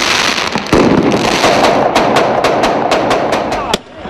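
A loud street clash: dense noisy commotion, then a rapid, irregular run of sharp cracks, about five a second, from about a third of the way in. The sound cuts off abruptly near the end.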